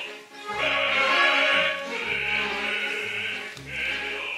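Operatic singing with orchestra: voices hold notes in short phrases over low sustained orchestral notes, with a brief break in the sound near the start and again near the end.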